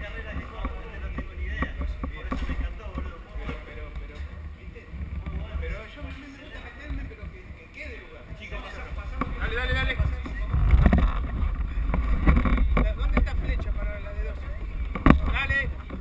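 Indistinct voices of people talking over a steady low rumble, louder in the second half, with a single sharp knock near the end.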